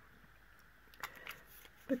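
Crop-A-Dile hand punch clicking as it punches a hole through a folded strip of watercolour paper: one sharp click about a second in, then a lighter click or two.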